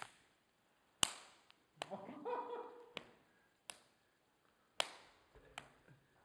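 Sharp slaps struck in a finger-hitting game: about six sudden cracks at uneven intervals, the loudest about a second in, with faint voices between them.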